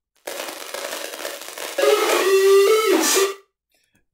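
Heavily distorted, noisy resample of a sung vocal played back from a music project: a dense harsh wash that gets louder about halfway through, with a held note that steps in pitch, then cuts off suddenly.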